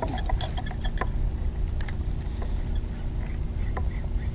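Low steady rumble of water moving around a kayak, with a few light clicks and taps from handling fishing gear, most in the first second.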